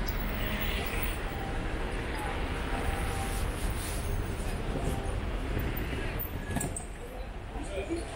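City street ambience: a steady low rumble of road traffic with faint voices of passersby.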